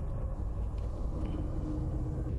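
Low, steady rumbling drone from a TV episode's ominous soundtrack, with a faint held tone entering in the second half.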